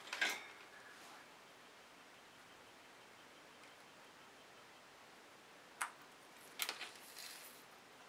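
Mostly quiet handling, with one sharp plastic click about six seconds in and a short run of clicks and scraping near the end, as hands work the clogged nozzle tip of a plastic acrylic paint bottle with a thin poking tool and twist its cap.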